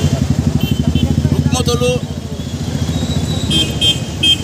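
A vehicle engine running close by with a rapid low pulsing beat, loudest over the first two seconds and then fading. A man's voice speaks briefly in the middle, and a few short high beeps sound near the end.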